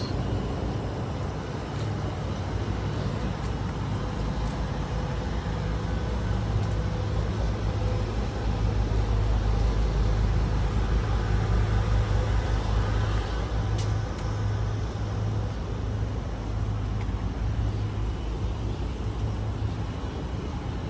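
Ford E-450 shuttle bus engine idling steadily with a low hum, a little louder around the middle.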